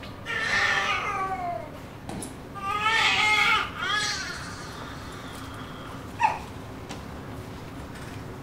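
Two long wailing cries, each bending and falling in pitch, the first starting about half a second in and the second about three seconds in, followed by a short sharp squeak about six seconds in.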